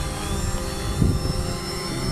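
Fimi X8 SE 2020 quadcopter hovering, its propellers and motors making a steady hum of several held tones. It is not turning in answer to the yaw stick, a fault the owner hopes lies only in the transmitter.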